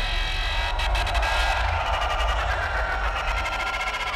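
The last chord of a heavy metal song ringing out after the drums stop: sustained distorted tones over a steady low rumble, slowly fading.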